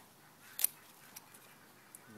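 Hand pruners snipping through a lower tomato leaf stem: one sharp click a little over half a second in, then a couple of faint clicks.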